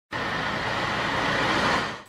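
Road traffic noise: an even engine-and-tyre hiss that grows a little louder as a motorised three-wheeler approaches, then fades out near the end.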